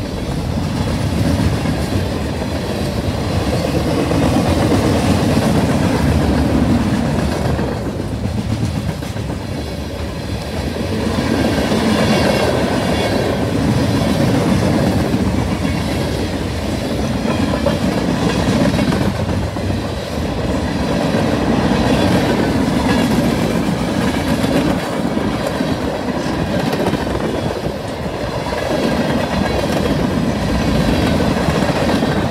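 Freight cars of a long manifest train rolling past close by. Their steel wheels clack over the rail joints and the crossing in a loud, continuous rumble that swells and eases every several seconds.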